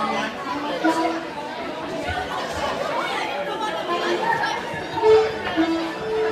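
Many people chatting at once in a large hall, a jumble of overlapping voices with a few brief held notes scattered through it.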